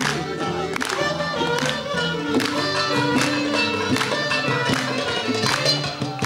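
A live band playing an instrumental passage with a steady beat, a little faster than one hit a second, under a held melody.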